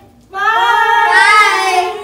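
Girls' voices in one long, drawn-out high cry, close to a sung note, starting about a third of a second in and holding for nearly two seconds.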